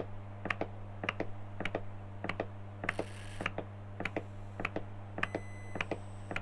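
Half-assembled hybrid stepper motor stepping forward one full step at a time: short sharp clicks, many in close pairs, coming a little under twice a second over a steady low hum.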